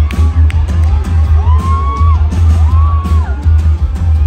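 Live rock band playing at concert volume, heard from within the audience, with a heavy booming bass. Two long high notes rise, hold and fall over the band, one after the other.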